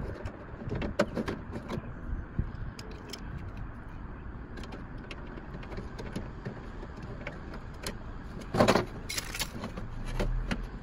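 Scattered small metallic clicks and knocks from hand tools and parts being worked inside a scrapped car's door panel, with a louder rattling scrape about a second before the end.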